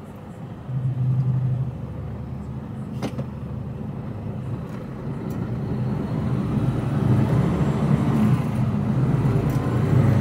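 HGV tractor unit's diesel engine heard from inside the cab, idling steadily, then pulling harder from about six seconds in as the lorry moves off, with a faint rising whine. A single sharp click comes about three seconds in.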